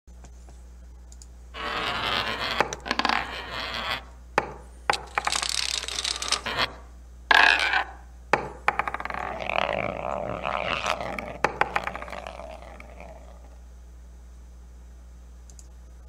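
Animation sound effects of balls rolling along tracks: several rushing rolling stretches broken by sharp clicks and clacks, the last rolling sound fading away about two-thirds of the way through, over a faint steady low hum.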